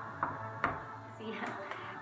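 Light clicks and knocks of kitchen utensils being handled: a plastic measuring spoon at the stainless steel pot and small spice jars. Two sharper clicks come in the first second, then fainter handling.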